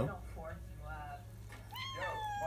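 A cat meowing: a couple of short meows, then a longer meow near the end that rises and then holds steady.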